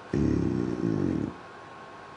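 A man's voice drawing out a long hesitant 'Et…' for about a second, then quiet room tone.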